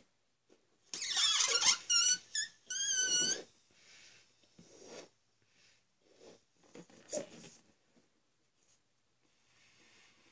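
Latex balloon being blown up by mouth: a rush of breath pushed into it, then a brief wavering squeal from the stretched rubber neck around two to three seconds in, followed by fainter, intermittent puffs of air.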